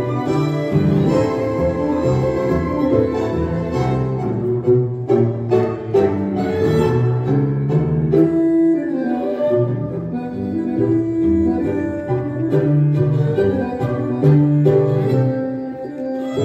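Tango music led by violins and other bowed strings, with sustained melodic lines broken by sharp staccato accents a few seconds in.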